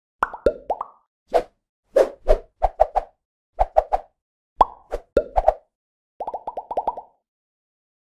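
Animated-intro sound effects: a string of short cartoon pops, several gliding up or down in pitch, in small groups, ending in a quick run of about eight pops a little before the last second.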